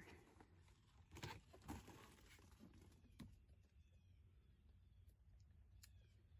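Near silence, with a few faint plastic rustles and clicks in the first half as a clear plastic humidity dome is lifted off a seed-starting tray.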